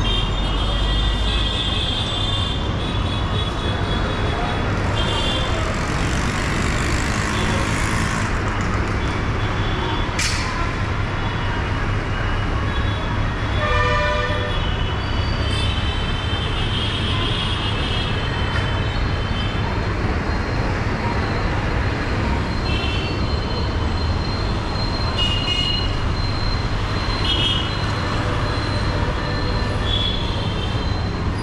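Busy city street traffic heard from above: a steady mix of engines and tyres with frequent short vehicle horn toots. A lower, louder horn sounds about halfway through.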